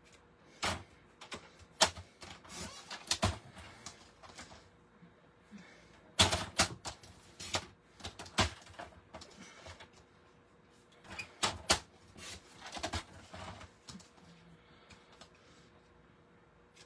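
Paper trimmer cutting cardstock into small pieces: sharp clicks and snaps from the blade carriage and the card, with scraping as the strip is slid into place. These come in three bursts a few seconds apart.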